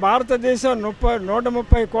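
Speech only: a man speaking Telugu into a handheld microphone. A brief low thump is heard about three-quarters of the way through.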